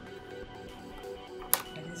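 Background music with steady sustained tones, and a single sharp click about one and a half seconds in.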